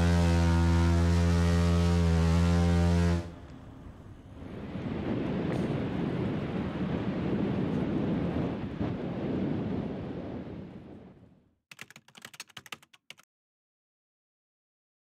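Ship's horn on a ferry giving one long, low, steady blast of about three seconds, which cuts off. Then a rush of wind and sea swells and fades away, with a few faint clicks near the end.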